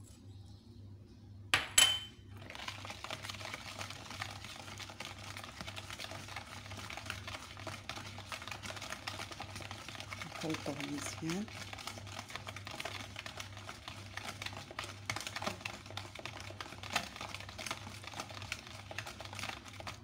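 A balloon whisk beating a thin, runny egg-and-oil batter in a bowl: a fast, continuous scratchy swishing and tapping that starts about two seconds in. Just before it, a single sharp clink.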